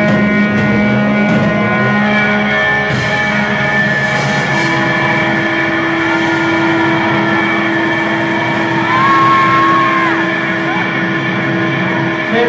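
Live rock band's electric guitars through amplifiers, playing a loud, sustained wash of droning guitar noise with long held tones. A new held note comes in about halfway through.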